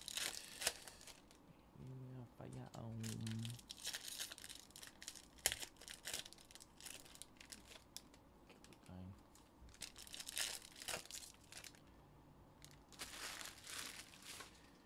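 Panini Mosaic card pack wrappers being torn open and crinkled in a string of short crackling bursts. A man's voice murmurs briefly about two seconds in.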